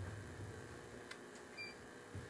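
Faint room tone: a steady low hiss and rumble, with two faint clicks a little after a second in.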